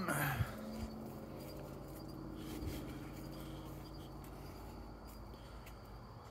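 Faint steady night background with a low hum and a few soft clicks and knocks as the phone is handled against the nest boxes.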